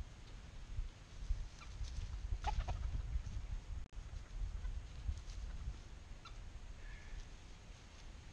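Chickens clucking, a few short calls about two and a half seconds in and again later, over a steady low rumble.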